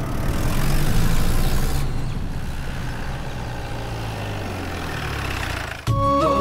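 Open-top jeep's engine running as it drives past, with a hiss of tyre and road noise; the engine note sinks slightly, and the sound cuts off suddenly near the end.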